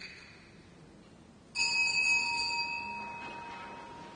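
A small bell struck once about a second and a half in, a clear ringing tone that fades away over about two seconds, rung as the priest enters to signal the start of Mass.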